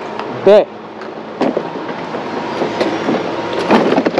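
Steady din of a go-kart hall, kart engines and background voices, with a few sharp knocks as a driver settles into a kart.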